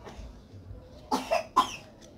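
A person coughing: three quick coughs in a row about a second in.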